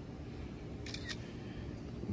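Smartphone camera shutter sound, clicking once about a second in, over faint outdoor background noise.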